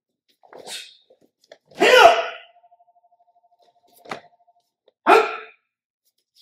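A martial artist's short, sharp shout (kihap) about two seconds in, the loudest sound, and a second shorter shout near the end. Between them comes a single knock, with a faint swish of the staff early on.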